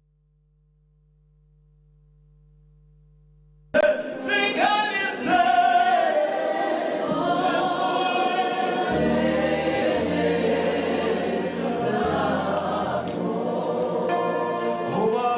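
Near silence with a faint low hum for nearly four seconds, then a choir breaks into gospel singing, with deep held bass notes joining about three seconds later.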